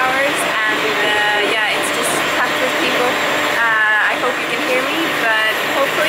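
A woman talking over a steady rush of wind on the microphone on the open deck of a moving ferry.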